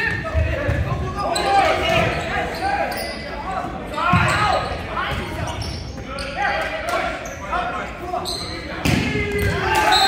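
Volleyball rally in a gymnasium: the ball being struck with sharp smacks, three of them spaced about four to five seconds apart, amid players' and spectators' voices calling out.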